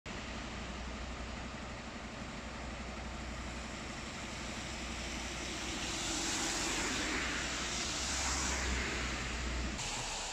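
Road noise: a steady low hum with the hiss of a car passing on a wet road, swelling in the second half and cutting off suddenly near the end.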